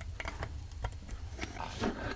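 A few faint, scattered clicks and light knocks of metal Garrett GT1752 turbocharger parts being handled on a carpeted bench.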